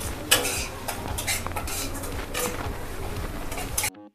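Metal spatula scraping and clinking against a kadhai while a thick tomato masala is stirred, in several separate strokes. The sound cuts off abruptly just before the end.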